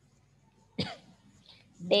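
A single short cough about a second in, then a woman's voice starts speaking near the end.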